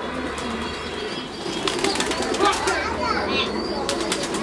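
Pigeons at a loft, with a quick flurry of wing claps from a little under two seconds in to just under three seconds in. Bird calls and chirps can be heard around it.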